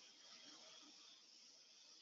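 Faint, slow deep inhale through the nose: a soft, steady hiss of drawn breath.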